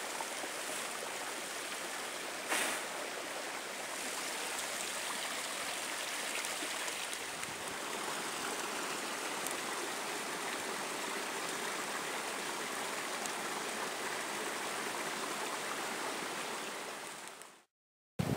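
Small mountain stream cascading down rocks: steady rushing water, with a single bump about two and a half seconds in. It fades out just before the end.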